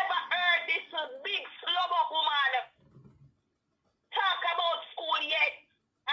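A woman talking in two stretches, with a pause of about a second and a half in the middle.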